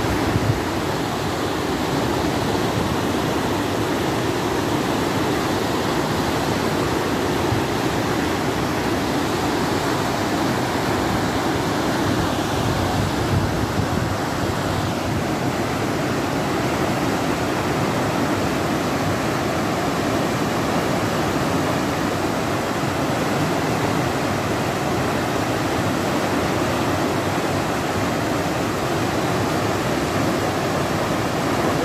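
Fast, muddy water rushing and churning down a concrete irrigation canal and through a sluice gate, a steady, even rush of water noise.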